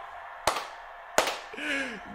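Two sharp snaps, about 0.7 s apart, each with a short fading ring, followed near the end by a brief faint low voice.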